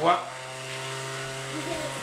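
Hover soccer ball's small electric fan motor running with a steady, even hum. The hum stops shortly before the end.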